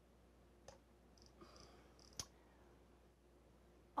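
Near silence with a few faint computer mouse clicks, the sharpest about two seconds in.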